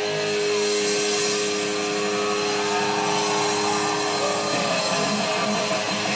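A live rock band's distorted electric guitar holds a long sustained note, with gliding pitch bends a few seconds in, over the band's loud PA.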